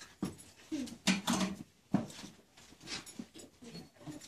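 Short, muffled vocal sounds and bumps of shuffling from children seated close by, in a few separate bursts with a short pitched sound about a second in.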